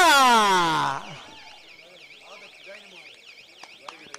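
A man's announcing voice holding one long call that falls in pitch and ends about a second in. After it comes a faint warbling electronic alarm tone, rising and falling about three times a second, over a murmuring crowd.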